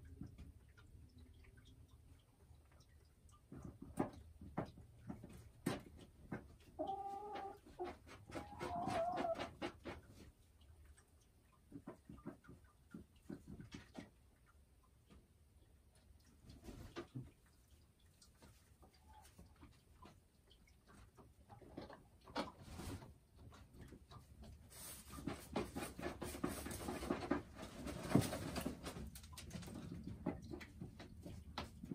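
Boris Brown hen in a straw-lined nest box: scattered clicks and straw rustling as she shifts, a few short low clucks about seven to nine seconds in, and a longer bout of rustling near the end.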